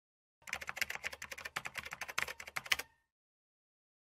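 Computer-keyboard typing sound effect: a quick, uneven run of key clicks for about two and a half seconds, starting about half a second in and ending with a faint brief tone.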